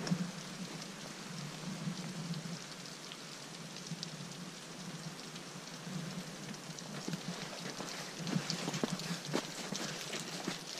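Meltwater dripping steadily off a snow-laden roof, sounding like rain, with louder, closer drips in the last couple of seconds; the roof snow is melting fast.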